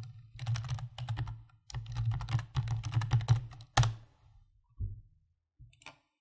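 Computer keyboard typing: a quick run of keystrokes lasting about three seconds, then one louder keystroke, followed by a few scattered clicks.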